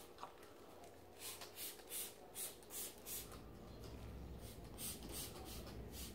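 Hands rubbing through a dog's long, thick coat, making faint swishing strokes about two or three a second, working dry shampoo into the fur.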